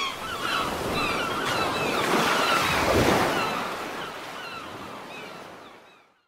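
Surf washing onto a beach, with many short calls from a flock of seabirds over it; a wave swells about halfway through, then the whole sound fades out to silence.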